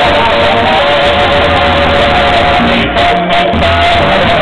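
A banda playing live music, loud: held melody notes over a low bass line, recorded from the crowd.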